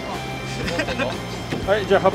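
Indistinct voices, louder near the end, over the steady low drone of the fishing boat's engine.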